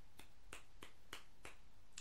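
About six light finger snaps in a row, faint, irregularly spaced about a third of a second apart.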